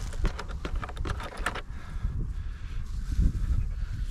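Clicks and knocks of hands handling a plastic electric-fence energiser and fitting leads to its terminals, in a quick run during the first second and a half and sparser after. Under them a steady low rumble of wind on the microphone.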